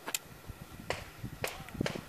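A few faint, sharp clicks and light knocks, irregularly spaced, typical of handling noise from gear or a pistol rather than gunfire.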